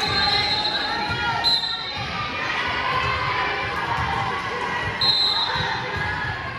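Referee's whistle blown in three short, steady high blasts: one at the start, one about a second and a half in, and one about five seconds in. Crowd chatter and scattered thuds fill the echoing gym around them.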